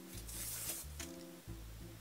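Quiet background music with soft held chords that change every half second or so, with a faint rustle of a paper slip being unfolded in the first second.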